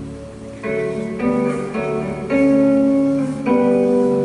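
Live band playing an instrumental passage without vocals: guitars ring out chords that change every half second or so. The notes come in about half a second in and grow louder a little past two seconds.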